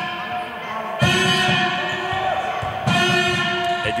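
A basketball being dribbled on a sports-hall floor, under held musical notes that strike anew about a second in and again near the end.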